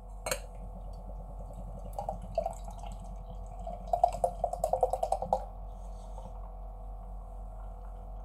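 Beer glugging as it is poured from a full can into a tilted glass: a run of quick glugs that starts about two seconds in, speeds up, and stops about five and a half seconds in. A single sharp click just before it, as the can meets the glass.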